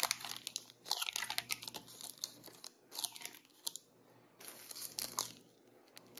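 Plastic snack packets rustling and crinkling as they are handled and set into a plastic bin, with light taps, in short scattered bursts.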